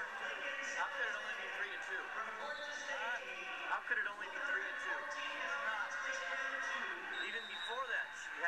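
Indistinct voices of a gym crowd and people at a wrestling match, played back through a television's small speaker, thin and without bass. Several voices overlap throughout, with short rising calls about a second in, around three seconds in, and near the end.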